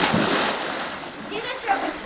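Water splashing: a loud splash right at the start that dies away over about half a second.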